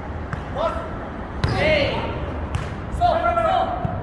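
Jokgu ball being kicked and bouncing during a rally: three sharp thuds about a second apart, with players' loud shouted calls between and after them.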